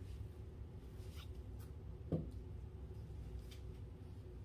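Steady low room hum, with a single dull thump about halfway through and a few faint soft ticks.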